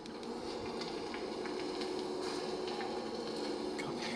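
Steady faint hiss with a low electrical hum and a few faint ticks, from a handheld recorder playing back a recording as the listeners strain for a very, very faint voice.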